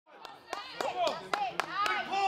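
Hands clapping in a steady rhythm, about four claps a second, with voices shouting encouragement over it as a competitor hauls a heavy truck by rope.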